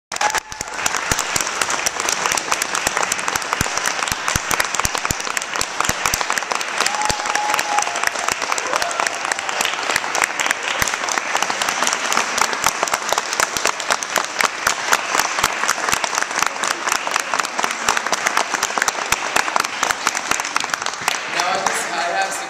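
Audience applauding, many hands clapping steadily for about twenty seconds, with a few voices calling out among the clapping; the applause thins out near the end.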